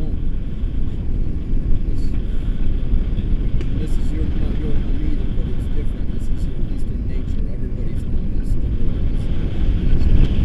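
Airflow buffeting the camera microphone of a paraglider in flight: steady, loud, low rumbling wind noise, with a few faint ticks.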